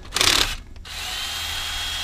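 Cordless drill with a quick-chuck socket spinning a wheel lug nut, a short burst near the start and then the motor running steadily with a whine that rises in pitch about a second in and holds there.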